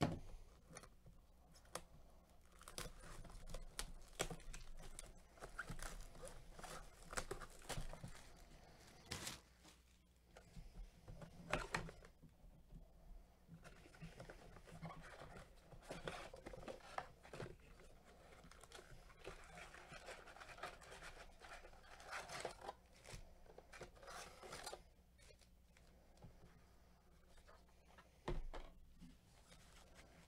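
A Panini Mosaic basketball blaster box being unwrapped and opened by hand: its seal and plastic wrap torn off, then the cardboard box and its packs handled. Quiet, irregular tearing, crinkling and scraping, with a few sharper knocks.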